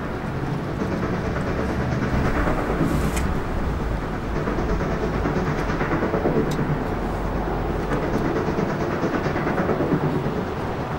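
Golf-ball retrieving machinery running with a steady rumble and a rattling clatter, with scattered faint clicks.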